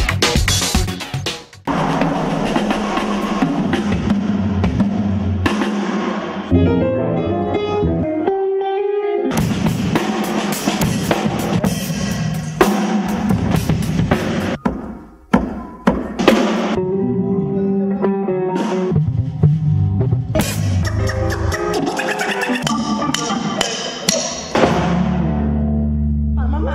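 Funk-influenced band music with drum kit, bass and electric guitar, changing abruptly several times as different sections are cut together.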